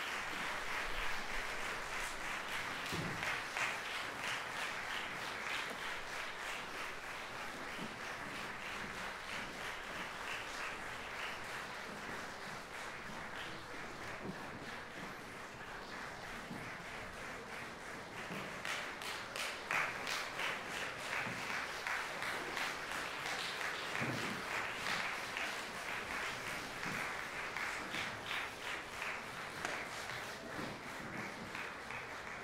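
Audience applause filling a concert hall, continuous, easing a little midway and picking up again in the second half, with a couple of faint low thumps.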